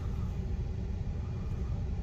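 Steady low rumble with a faint hiss, without distinct knocks or clicks.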